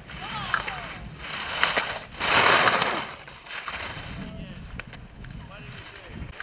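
Ski edges scraping and carving on slushy snow as a slalom skier turns past close by, with a loud hiss about two seconds in that lasts under a second. A few sharp clicks come with it.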